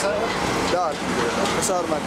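A man talking over a steady background of street noise with a low, even hum.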